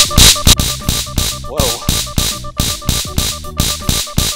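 Wrist stun-gun bracelet sounding its loud alarm: a fast-pulsing electronic beep, mixed with sharp, irregular crackling bursts.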